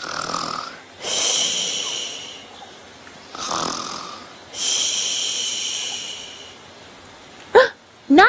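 Comic pretend snoring by a sleeping character: two snores, each a short rasping breath followed by a long breath with a high whistle in it that fades away. A brief voice sound comes just before the end.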